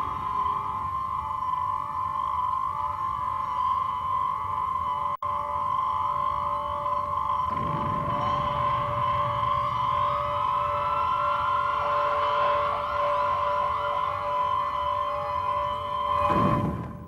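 Eerie film soundtrack of sustained, siren-like electronic tones. From about halfway a second tone slowly rises, and the sound drops out for an instant about five seconds in.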